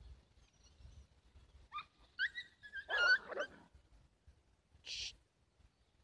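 A dog whining and yelping: a run of short, high cries that slide up and down, about two to three and a half seconds in. A brief hissy burst follows near the end.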